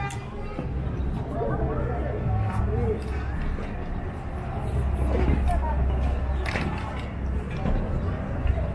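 People talking in the background, over music playing and a steady low hum.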